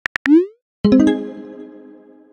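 Texting-app sound effects: the last few keyboard-tap clicks, a short rising swoosh as the message is sent, then a sharp pitched sound effect about a second in that rings and fades away over roughly a second.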